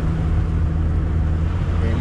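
Small car's engine running at a steady, even note with road noise, heard from inside the cabin while driving slowly.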